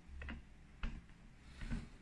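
Print head carriage of a Focus 6090 UV flatbed printer being pushed by hand along its gantry rail, making a few faint clicks and light knocks as it slides.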